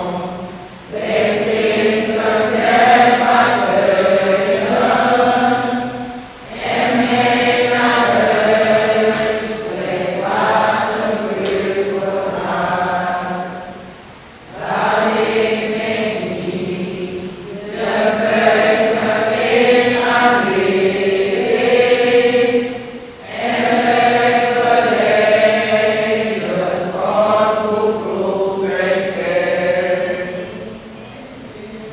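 Group of voices singing a hymn in long, chant-like phrases, with brief breaks between phrases.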